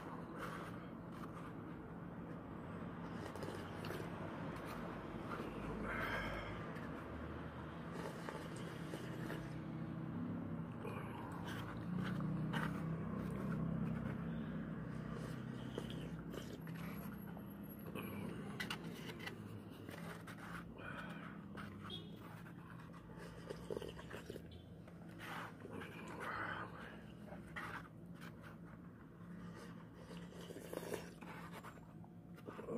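A person drinking soup from a cup-noodle cup and eating the noodles: scattered sips, slurps, swallows and small clicks, over a steady low hum.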